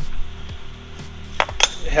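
Steel hand tools clinking at a metal lathe: a few light knocks, then two sharp metallic clanks about a second and a half in.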